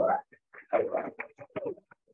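A person in the audience gives a short whoop, then there are a few sharp claps. The sound comes through a video call's audio, which chops the gaps to silence.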